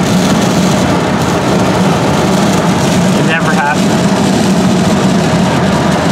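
Loud steady wind and road noise inside a car at highway speed, with a loose plastic sheet over the side window flapping in the wind.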